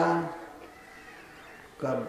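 A man lecturing in Hindi: the last, drawn-out syllable of a word ends shortly after the start, a quiet pause follows, and the next word begins near the end.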